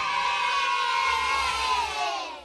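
End of an animated channel intro jingle: a bright held chord of many layered tones whose pitch sags slightly near the end.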